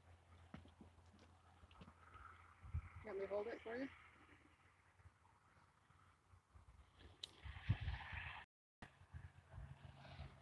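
Mostly quiet, with a faint person's voice for about a second around three seconds in, then a sharp click and soft rustling near the end.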